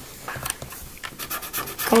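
Marker pen scratching on paper in a series of short, quick strokes as a small shape is drawn and filled in.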